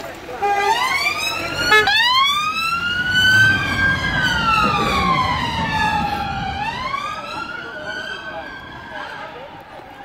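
Police car siren winding up into a slow wail, its pitch rising, falling and rising again. It grows fainter over the last few seconds.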